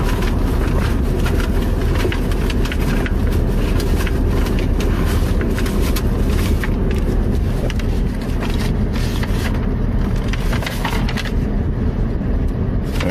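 Steady low rumble of an idling pickup truck heard from inside the cab with the window open, with repeated rustling, scraping and handling clicks as papers are searched for.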